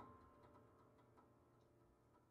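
Faint, sparse fingertip-and-nail taps inside a piano, a few soft clicks spread out and getting quieter. A ringing tone from the preceding strokes fades away early on.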